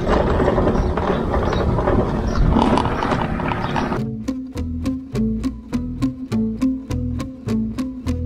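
A small motorbike engine running with wind noise as it rides along; about halfway through this cuts abruptly to background music of quick, evenly spaced plucked-string notes over a steady low tone.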